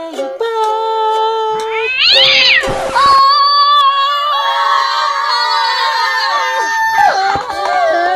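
A drawn-out cat-like yowl: a short call that rises and falls about two seconds in, then a long, high, wavering wail held for about four seconds. It follows a couple of seconds of held musical notes.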